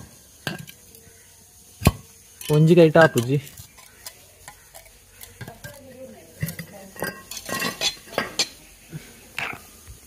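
A curved machete blade scraping and clicking against the rim of a square water-tank cover as it is pried up: scattered sharp clicks, one loud one about two seconds in, then a run of irregular scrapes and clicks in the second half.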